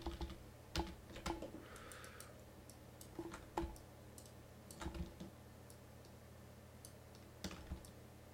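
Scattered clicks and taps of a computer keyboard and mouse, in small clusters every second or two, over a faint steady low hum.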